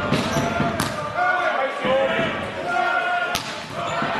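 A volleyball being hit during a rally: two sharp smacks of hand on ball, about two and a half seconds apart, amid players' shouts and voices in the hall.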